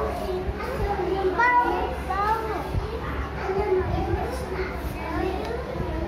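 Children's voices chattering and calling out at once, over a steady low hum.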